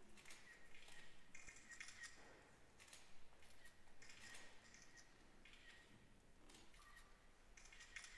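Near silence, with faint scattered hissing sounds and a faint high-pitched tone that comes and goes.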